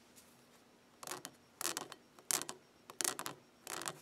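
A camshaft being handled on newspaper: five short scraping, rustling bursts about two-thirds of a second apart.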